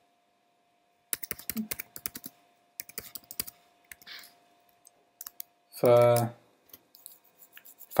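Typing on a computer keyboard: a quick run of keystrokes for about two and a half seconds, then a few scattered taps.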